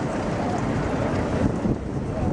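Wind buffeting the camera microphone, a steady low rumble over the background noise of a busy city square.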